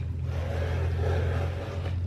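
A steady low hum, with a faint rushing noise above it.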